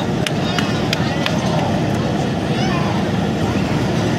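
Steady running rumble of a broad-gauge passenger train rolling slowly, heard from inside the coach, with a few sharp clicks in the first second and a half. Faint passenger voices come through the middle.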